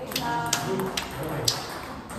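Table tennis ball clicking off bats and the table in a rally: four sharp clicks about half a second apart, the loudest about one and a half seconds in.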